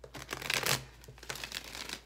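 A deck of tarot cards being shuffled by hand: a fast run of papery card slaps and riffling clicks, loudest about half a second in.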